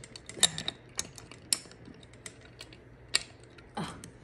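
Irregular light metallic clicks and taps as a bolt is worked by hand into the threaded hole of a chrome foot-rest bracket, the sharpest click about three seconds in.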